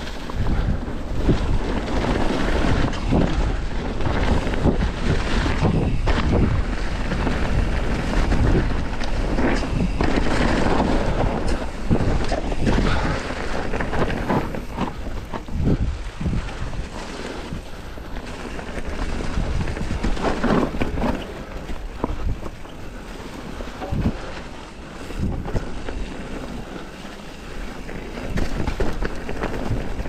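Wind buffeting the microphone of a camera on a mountain bike riding down a dirt and leaf-litter woodland trail. The tyres roll over the ground and the bike gives frequent short knocks and rattles over bumps.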